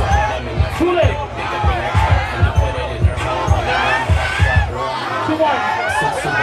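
DJ-played dance beat with a heavy, thumping kick drum under a crowd's voices in a packed hall; the kick drops out briefly near the end before coming back.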